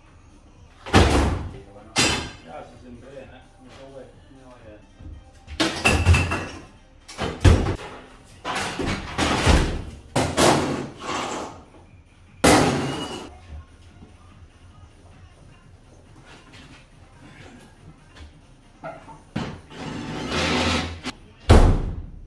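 Scrap metal parts being thrown into the back of a van: a series of loud, irregular clanging and banging impacts. Near the end the van's rear tailgate is slammed shut.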